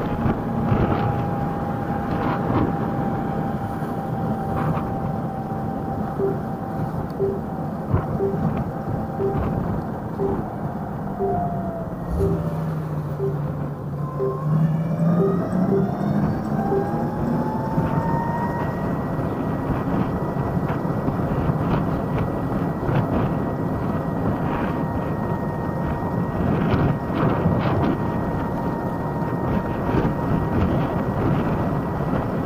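Ride on a TIER electric moped: steady wind and road noise with the electric motor's whine, which falls in pitch as it slows for a turn about twelve seconds in and climbs again as it pulls away. A turn-signal beep ticks about once a second through the turn.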